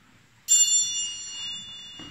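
A small bell struck once about half a second in, giving a bright, high ring of several tones that fades slowly.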